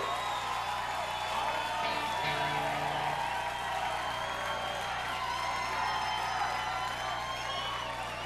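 Rock club crowd cheering, whooping and whistling after a song ends, over a steady low amplifier hum. A short low note sounds about two seconds in.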